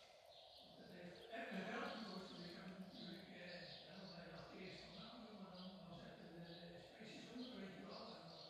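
Faint, indistinct speech murmuring throughout.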